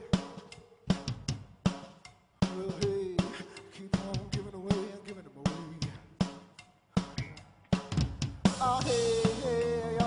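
Rock band playing live: a sparse drum-kit passage of evenly spaced kick and snare hits with quieter sustained notes underneath, then the whole band comes back in louder about eight and a half seconds in.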